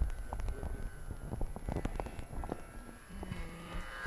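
Low wind rumble on the microphone, with scattered light clicks and knocks.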